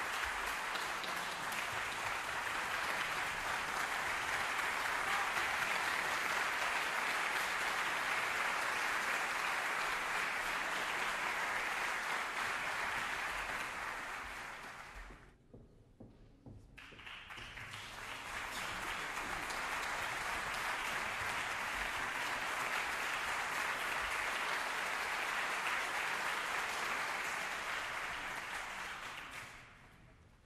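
Audience applauding steadily in a large hall. The applause fades away around the middle, stops for about a second, then swells back up and fades out again near the end.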